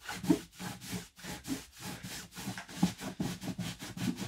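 A cloth rubbed hard back and forth over the satin-finished top of a Taylor GS Mini Koa acoustic guitar: rapid scrubbing, about two or three strokes a second, working grime and sweat build-up off the finish with Taylor Satin Guitar Cleaner.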